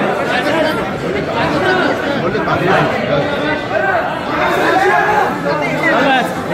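Many people talking over one another at once, a loud, unbroken tangle of voices with no single clear speaker.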